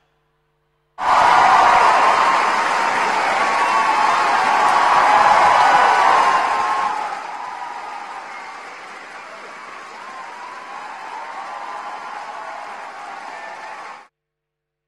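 Theatre audience applauding and cheering, breaking out suddenly about a second in after a moment of silence. It is loudest for the first few seconds, with whoops over the clapping, then eases to steadier applause.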